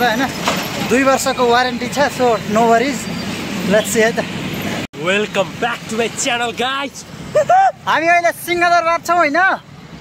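Men talking over the steady noise of street traffic; a sudden cut about five seconds in leaves clearer speech with much less traffic noise behind it.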